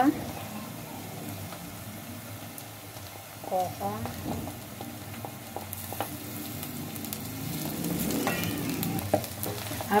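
Minced meat, onion and green pepper frying in a metal saucepan with a steady sizzle. A wooden spoon stirs them, with short scrapes and clicks against the pan.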